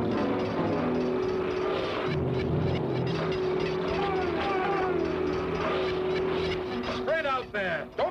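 Cartoon soundtrack: background music under a steady droning tone, with short sliding, whistle-like glides in the middle and near the end.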